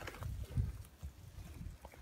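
Footsteps on wood-chip mulch and handling of a handheld camera: soft, irregular low thumps and rumble, with a few faint clicks near the end.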